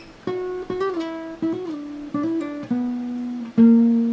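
Acoustic guitar playing a single-note lead phrase: about eight plucked notes high on the neck, some slurred with hammer-ons, pull-offs and a slide. It ends on a louder low note struck near the end and left ringing.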